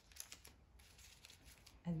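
Faint rustles and light clicks of small paper picture cards being gathered and squared into a single pile.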